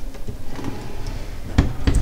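A built-in dishwasher door being pushed shut: two sharp knocks about a third of a second apart near the end, the loudest sounds here.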